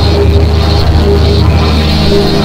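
Loud instrumental synthesizer music with a steady heavy bass line and a short synth note that keeps recurring; no vocals.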